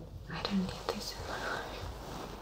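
Soft whispered speech, with a couple of small sharp clicks about half a second and a second in.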